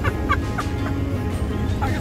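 A woman laughing, a few quick pulses in the first half-second, over a steady low rumble inside the vehicle.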